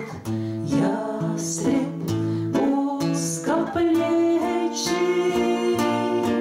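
Two women singing together to two acoustic guitars, a slow song with long held notes.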